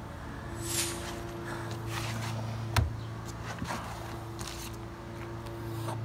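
A steady low hum, with a single sharp knock about three seconds in and a few faint handling sounds of a raw pork loin being held on a wooden cutting board.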